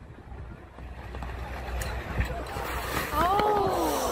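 Spectator yelling out over a firefighters' hose-drag race, one long shout that rises and then falls in pitch, starting about three seconds in, over steady outdoor rumble and wind on a phone microphone.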